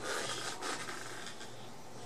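Hands and clothing rubbing and scraping against the wooden body of a bass guitar as it is turned over in the hands, in two brief swells within the first second. A steady low hum runs underneath.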